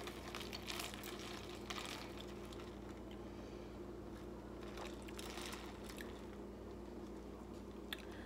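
A drink with ice stirred with a plastic straw in a plastic cup and sipped through the straw: a few short, faint bursts of liquid and ice sounds over a steady faint hum.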